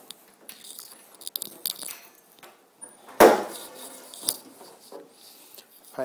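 Car hood being unlatched and raised: one loud clunk about three seconds in, with small clicks and handling rustle around it.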